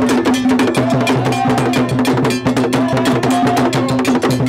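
Traditional Akan drum ensemble playing, with an iron bell keeping a fast, even pattern of strokes over a held low tone.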